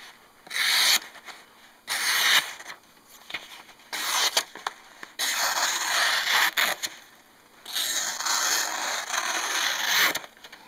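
Thin, sharp O-1 tool steel paring knife slicing through a sheet of paper held in the hand, a test of the edge's sharpness: three short cuts, then two longer slices of about two seconds each, with the paper rustling.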